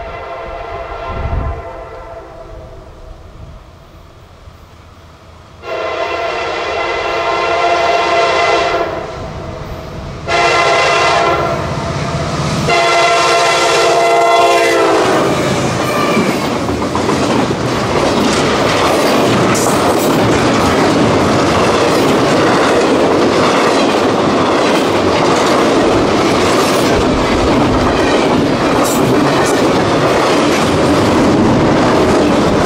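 Freight locomotive air horn sounding several long blasts for the grade crossing, the last one dropping in pitch as the locomotive goes by. Then double-stack container cars rumble past with steady wheel clatter on the rails.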